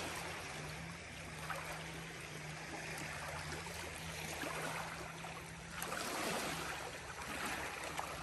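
Small river waves lapping and washing at the shoreline, with a faint steady low hum underneath.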